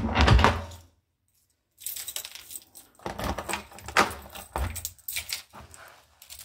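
A bunch of keys jangling and clicking at a front-door lock in repeated short bursts, with a second of dead silence about a second in.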